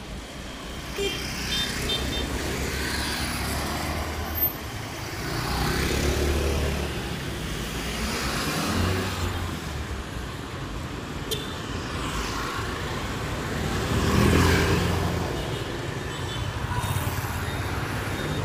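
Road traffic on a busy town street: motorbikes, cars and a small delivery truck passing. It swells louder as vehicles go by close, most at about six, nine and fourteen seconds in.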